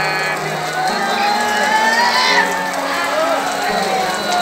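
Background music with low sustained chords changing in steps, over people's voices calling out from a crowd.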